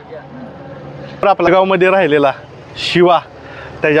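A man speaking in short phrases, with a steady background hiss outdoors in the pauses.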